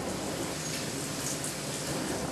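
Tap water running steadily from a stainless-steel scrub-sink faucet, splashing over soapy hands and forearms during a surgical hand scrub.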